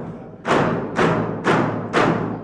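Music of deep drum beats, struck about twice a second, each beat ringing and slowly dying away.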